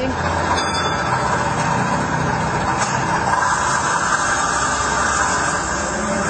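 A motor vehicle running steadily, a continuous even engine and road noise with no change in pitch.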